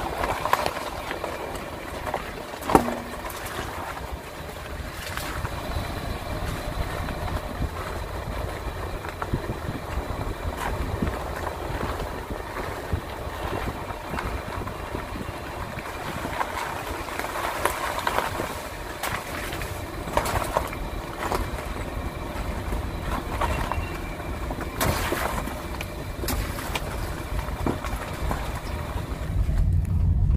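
A car driving over a rough, potholed road, heard from inside: a steady low road-and-engine rumble with scattered knocks, the sharpest one about three seconds in.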